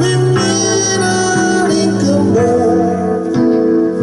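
A Korg electronic keyboard played live, holding sustained chords that change a few times, with a man's voice singing over them.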